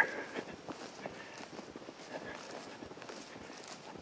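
Faint footsteps walking through grass and weeds, a soft, irregular run of light steps.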